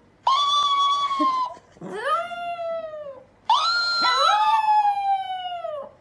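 A chihuahua howling: three long howls, each sliding down in pitch as it fades, with a lower second voice overlapping the last one.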